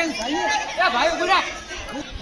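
Boys' voices calling out and chattering, several at once.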